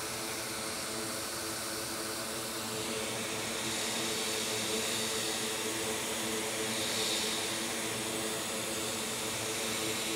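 Steady rushing air from an electric blower fan, with a low hum of a few steady tones underneath; it grows slightly louder about three seconds in.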